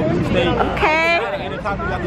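Speech over the babble of a crowd.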